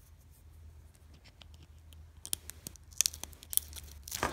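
Thin plastic film being handled, crinkling with sharp clicks and crackles that start about halfway through and peak near the end, over a low steady hum.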